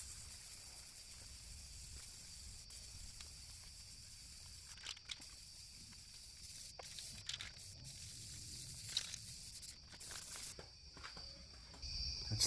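Faint hiss of an aerosol can of self-etching automotive primer being sprayed, with a few faint clicks and a steady high chirring of crickets throughout.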